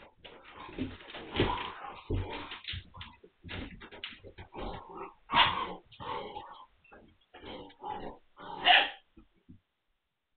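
Magyar Vizsla puppies, nine weeks old, vocalizing during play in short irregular bursts, with the loudest about five and nine seconds in. The sound stops suddenly near the end. The sound is thin, heard through a security camera's microphone.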